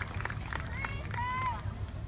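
Outdoor crowd chatter, with a few short, raised, high-pitched voices calling out about halfway through, over a steady low hum.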